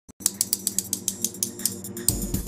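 Combination-safe dial clicking as it is turned, a fast even run of about seven clicks a second over a low steady drone.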